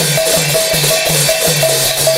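A barrel-shaped double-headed hand drum and large brass hand cymbals playing a fast, steady rhythm with no voice. The deep drum strokes drop in pitch after each hit, under the repeated ringing clash of the cymbals.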